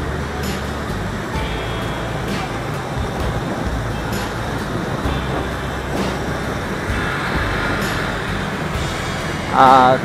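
Steady road noise from riding a motorbike in city traffic: an even rush of wind and engine rumble with surrounding traffic. A man's voice starts just before the end.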